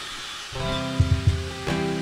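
Steel-string acoustic guitar starting a song: a strummed chord rings out about half a second in and a second chord follows just before the end.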